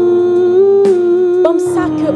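A woman humming one long held note in worship, her pitch dipping slightly in the second half, over sustained keyboard chords.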